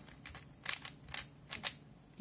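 Plastic 3x3 puzzle cube's layers being turned by hand, giving a few short, sharp clicks spread over two seconds.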